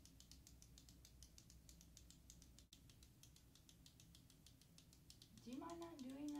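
A pen making a rapid, steady run of faint light clicks, which stops near the end as a person's voice comes in with a rising pitch.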